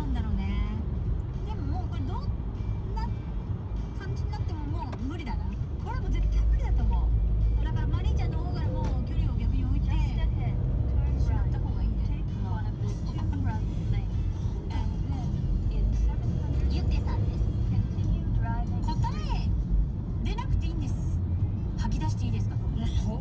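Steady low road and engine rumble inside a car's cabin as it drives through slow expressway traffic, swelling louder about six seconds in. Faint voices and music play underneath.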